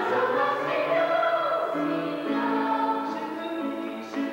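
Stage-musical ensemble singing with accompaniment, in long held notes that change pitch in steps.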